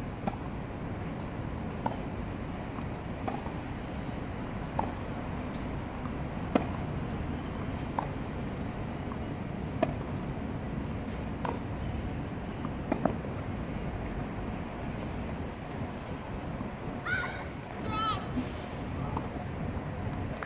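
Tennis ball struck back and forth in a baseline rally on a clay court, a sharp racket hit about every second and a half, over steady outdoor background noise. Near the end the hits stop and a short voice call is heard.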